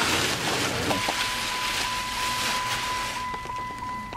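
A steady hiss, joined about a second in by a steady high-pitched electronic beep tone that keeps going.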